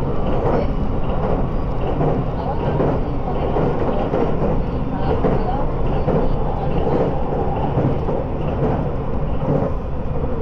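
Running noise heard inside the motor car of a 681 series limited express train at speed: a steady rumble of wheels on rail and running gear.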